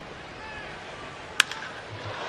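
A single sharp crack of a wooden baseball bat squarely hitting a pitched ball about a second and a half in, the ball struck well to right field, over a steady ballpark crowd hum.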